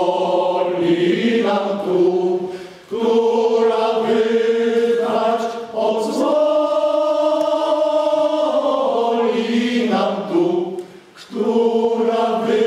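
Men's choir singing a cappella: long sustained chords, including one held for about three seconds in the middle. There are short breaks between phrases at about three seconds and again near eleven seconds.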